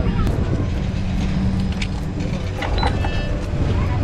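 Wind buffeting the microphone as a loud, dense low rumble, with a steady low hum underneath that fades out a little past halfway.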